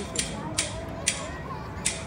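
A phone app's spinning-wheel ticking effect: sharp clicks that come further and further apart as the virtual wheel slows to a stop.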